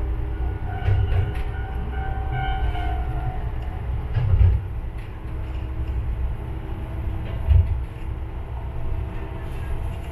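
Tsugaru Railway diesel railcar running along the track, heard from inside the car, its wheels thumping over rail joints about every three seconds. In the first few seconds a ringing tone from a level crossing's warning bell sounds as the train passes the crossing.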